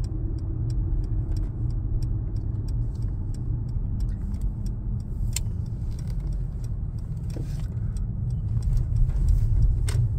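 Cabin noise of a Mercedes-Benz S63 AMG (W222) rolling slowly: a steady low engine and road rumble, with faint scattered clicks and one sharper click about five seconds in.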